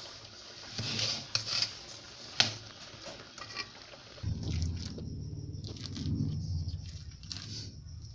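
Steel spoon stirring and scraping a sticky sesame-and-jaggery mixture in an aluminium pan, with scattered clicks of the spoon on the pan and one sharper knock about two and a half seconds in. From about four seconds in, a steady low hum comes in under it.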